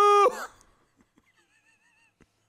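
A man's voice holding a loud, steady high note that cuts off about a quarter second in, followed by near silence.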